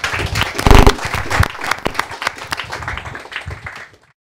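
An audience applauding, the clapping thinning toward the end and cutting off abruptly. A short, loud pitched sound rises above the clapping just under a second in.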